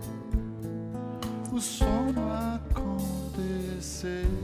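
Live band playing an instrumental passage: acoustic-electric guitar strummed over a drum kit, with kick-drum hits and cymbal crashes.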